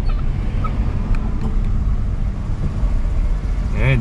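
Car cabin noise while driving slowly in heavy traffic: a steady low rumble of engine and road noise heard from inside the car.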